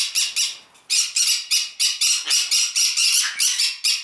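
Green-cheeked conures screeching: a fast, even run of shrill calls, about five a second, that stops briefly just before the first second, then carries on.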